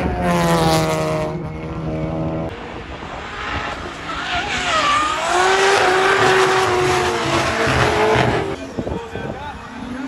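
Drift cars on a race circuit: a steady engine note for the first couple of seconds, then from about four seconds in, two cars drifting in tandem with tyre squeal and engines revving up and down. It cuts off sharply about a second before the end.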